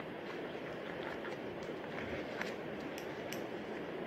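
Scissors cutting tape on a paper blind bag: a few soft, separate clicks and snips with paper handling over a steady faint room hiss.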